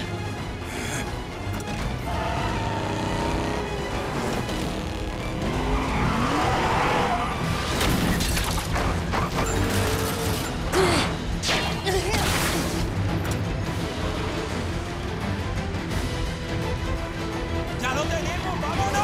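Action-film car-chase sound mix: a car and a tanker truck running at speed with tyres squealing, over a music score. A run of sharp hits and clatter comes in the middle.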